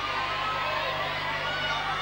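Tennis stadium crowd murmuring: a steady hubbub of many voices with no single voice standing out.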